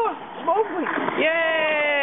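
Human voices: a few short vocal sounds, then, a little over a second in, one long drawn-out cry that slowly falls in pitch.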